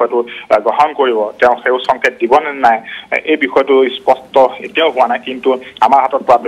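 A man speaking without pause, his voice thin and narrow as heard over a telephone line.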